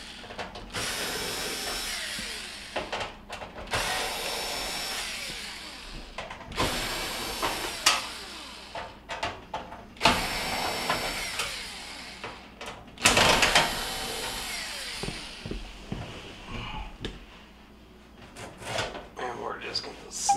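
Cordless drill/driver backing out the Phillips screws that hold a range's sheet-metal back panel, in about five short runs of a few seconds each with brief pauses between.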